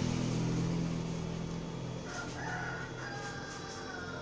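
A low engine hum fading away, then a faint, drawn-out, wavering call in the background from about halfway through.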